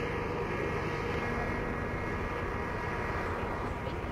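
Helicopters flying in overhead: a steady engine and rotor noise.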